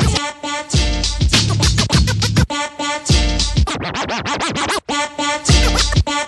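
DJ scratching a hip hop track on a Denon SC5000M media player: a pitched sample cut into rapid stabs, some swept up and down in pitch, over a beat with heavy kick drum hits.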